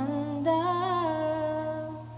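Female singer-songwriter's voice holding a sung note, a new note entering about half a second in with a wavering vibrato, over a low ringing acoustic guitar note.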